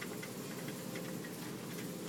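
Steady low background noise of a large shop floor, with a few faint, scattered ticks.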